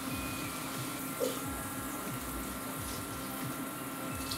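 Avocado oil and shrimp sizzling steadily in a hot skillet, with a faint short sound about a second in.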